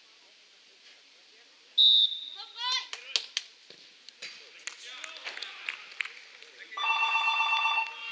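A referee's whistle gives one short, loud, high blast about two seconds in, the signal for the penalty kick to be taken, followed by shouting voices and a few sharp knocks. Near the end a loud, fluttering tone with several pitches at once sounds for about a second.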